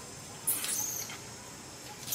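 Infant long-tailed macaque squealing: one high-pitched squeal about half a second in, lasting about half a second, with a short fainter squeak just after.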